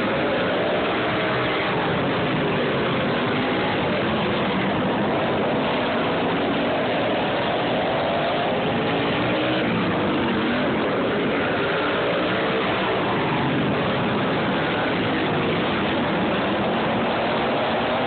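Several V-twin racing garden tractors running hard around a dirt oval, a steady engine din with overlapping notes that rise and fall as the machines accelerate, lift for the turns and pass by.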